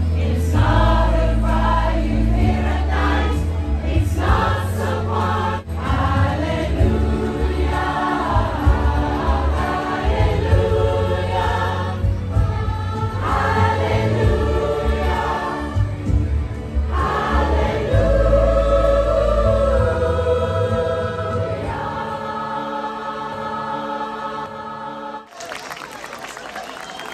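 Children's choir singing with an amplified backing track that carries a heavy bass line. The music stops abruptly near the end.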